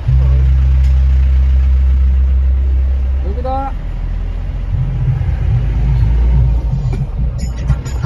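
Passenger van running on the road, heard from inside the cabin: a strong steady low drone with music playing along. There is a short rising tone about three and a half seconds in, and the low sound turns uneven and wavering from about halfway.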